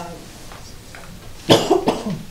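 A person coughing: two loud coughs in quick succession about a second and a half in.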